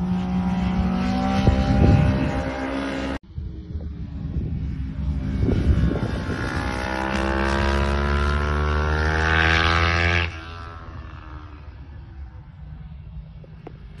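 Racing motorcycle engine heard from the trackside, its pitch climbing steadily as the bike accelerates, then dropping off abruptly about ten seconds in as the throttle is shut. There is a sudden break in the sound about three seconds in.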